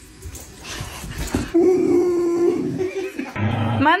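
A dog whining: one long, steady, high whine about a second and a half in, then rising cries near the end, with soft knocks underneath before it.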